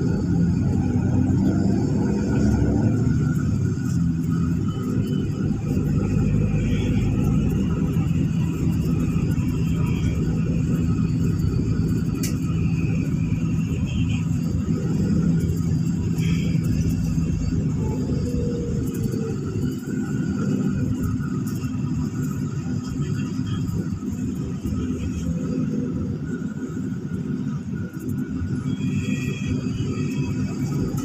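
Steady low engine and road rumble heard from inside a moving bus at highway speed, a little softer in the second half.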